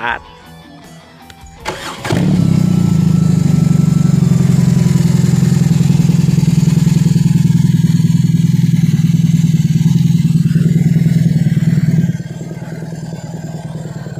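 BMW R18 First Edition's 1800 cc boxer twin started on the button: a brief crank about two seconds in, then it catches and idles steadily through handmade stainless-steel slip-on mufflers, a thick, smooth note that is not loud. The engine sound becomes quieter near the end.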